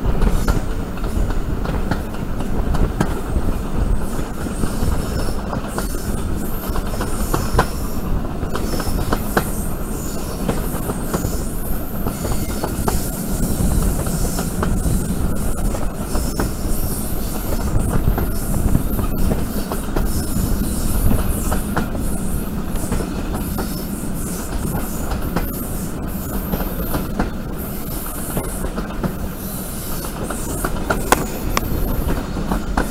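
Railway carriage wheels running on a curve, heard from an open carriage window: a steady rumble with irregular clicks over the rail joints and a high squeal that comes and goes as the wheel flanges rub against the curving rail.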